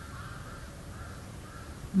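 Several faint short bird calls in the background over a low steady room hum.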